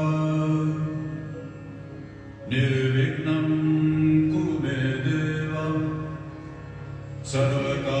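A devotional mantra chanted to music: long held sung notes over a steady drone, with a new phrase starting about two and a half seconds in and another near the end.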